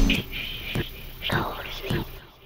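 A breakdown in the song: the full beat cuts out just after the start, leaving a whispered voice over a few sparse hits.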